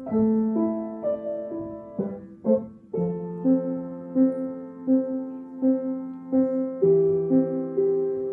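Piano playing a slow, gentle intro: held chords with a note re-struck about every 0.7 s, the harmony changing a few times.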